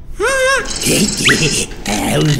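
A cartoon hedgehog character's wordless vocal sounds: a short squeal that rises and falls, then about a second of rougher, noisier vocalizing with two quick upward whistles.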